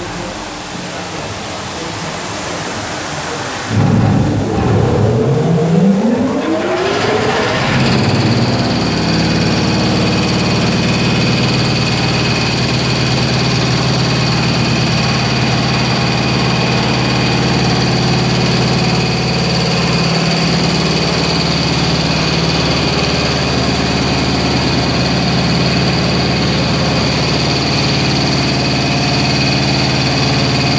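Automatic carpet washing machine: a steady hiss of water at first, then about four seconds in its motor starts with a whine that rises sharply in pitch over a few seconds, after which the machine runs steadily with a low hum and a high whine.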